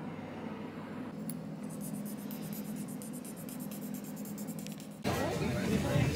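Steady low hum of a railway platform, with faint rapid ticking. About five seconds in it switches abruptly to the louder, continuous running noise of a DART electric commuter train, heard from inside the carriage.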